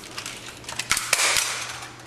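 Gunshots from handguns: a few sharp cracks close together about a second in, each trailing off briefly, with fainter clicks around them.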